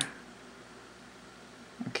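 Faint room tone: a low, even hiss with no distinct sound, between the end of one spoken phrase and the start of the next near the end.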